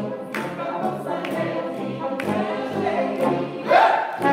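Brass quintet of trumpet, horn, tuba and trombone playing a classical medley in chords, with the tuba's low notes on a beat about once a second and a loud rising note near the end.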